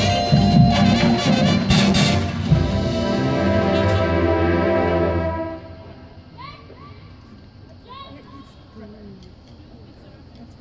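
Marching band brass and percussion playing a loud full-ensemble passage that stops abruptly about five and a half seconds in. After the cutoff only quiet ambience remains, with a few faint chirps.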